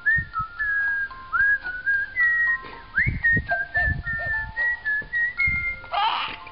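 Bird-like whistling: many short chirping notes that glide and step in pitch, several tones overlapping at once, with a few soft low thumps in between.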